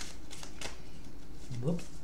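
A deck of tarot cards being shuffled by hand, the cards giving off a few short clicks.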